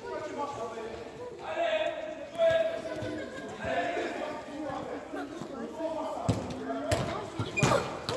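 Footballs being kicked and bouncing on artificial turf in a large covered hall: scattered sharp thuds that ring briefly, the loudest few near the end, over children's voices.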